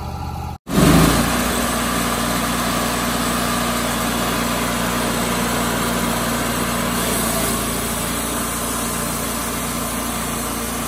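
The Kohler Command PRO gasoline engine of a Wood-Mizer LT28 portable sawmill, running steadily. A brief dropout comes about half a second in, then a loud surge just under a second in, after which the engine holds a steady drone.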